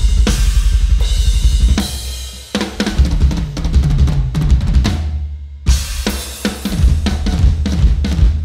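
Rock drum kit played hard: fast bass drum strokes under snare and Zildjian cymbals. The playing drops out briefly about two and a half seconds in, then fills resume, and after a short gap a loud crash lands a little past the middle.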